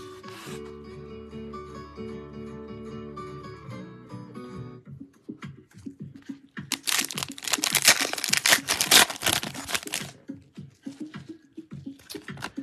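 Background music with guitar for the first few seconds. Then, from about five seconds in, a foil trading-card pack is torn open and its wrapper crinkled, loudest in a long stretch of tearing and crumpling, followed by lighter rustling and clicks as the cards are handled.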